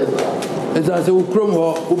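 A man speaking in Twi into a microphone, a low voice with continuous talk and no pause.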